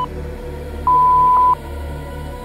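Interval-timer beeps: a short beep at the very start, then a long, loud beep about a second in that marks the end of the work interval and the switch to rest, over electronic background music.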